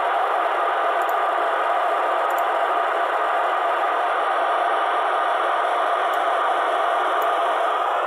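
Steady FM static hissing from the speaker of a TYT TH-9800 VHF transceiver tuned to the ISS downlink on 145.800 MHz. The channel is open with no voice on it once the astronaut has signed off his reply with "Over".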